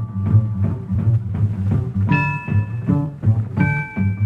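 Instrumental break of a boogie-woogie record: a steady pulse of upright bass and drums, with struck chords about halfway through and again near the end.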